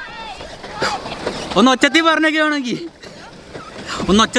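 A person's voice giving long, drawn-out calls, each rising and then falling over about a second, one every three seconds or so, over a steady low hiss.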